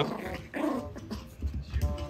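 A Pomeranian making short growls and whines while playing.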